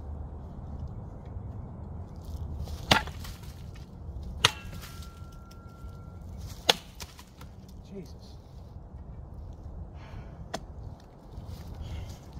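Cold Steel BMFDS shovel blade chopping into a sapling: four sharp chops at uneven intervals, the last one fainter.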